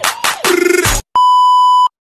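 The end of an intro music track with sharp beats, which breaks off about a second in. It is followed by a single steady, high-pitched beep sound effect lasting under a second.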